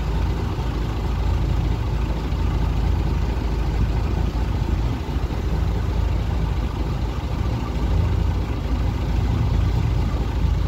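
Boat engine idling, a steady low rumble.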